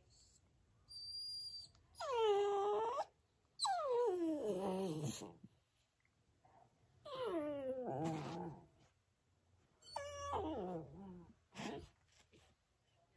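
Puppy making whiny stretching-yawn vocalisations: a short high squeak about a second in, then four drawn-out whining calls. The first dips and rises again, and the later three slide down in pitch. A brief squeak comes near the end.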